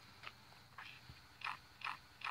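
Shoes scuffing on concrete pavement: a run of short, crunchy scrapes about two a second, louder in the second half.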